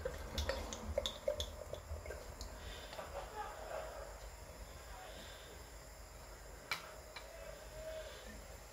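Stout being poured from a glass bottle into a stemmed glass: a faint pouring gurgle with a few small clicks, and one sharper click near the end.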